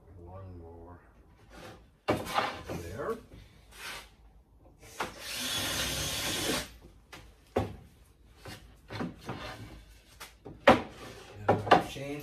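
Plywood pieces handled and set on a wooden workbench: a series of wooden knocks and clicks, the sharpest near the end, with a hiss lasting about a second and a half in the middle.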